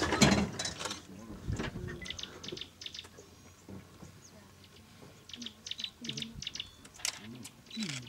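A person laughs briefly at the start, then it goes quiet except for faint, scattered clusters of short, high ticks and chirps.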